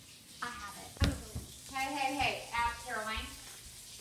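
A child's voice making several short, high-pitched wordless vocal sounds, with a sharp knock about a second in.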